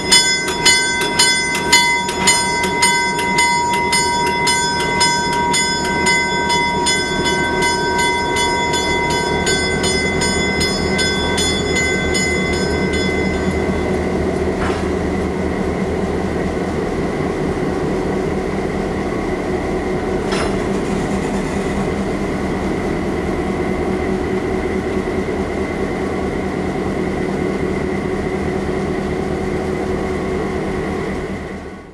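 Western Pacific 913, an EMD F-unit diesel locomotive, running steadily at low speed as it moves. Its bell rings about twice a second, the strokes weakening until the bell stops about a dozen seconds in. Two sharp clicks are heard later on.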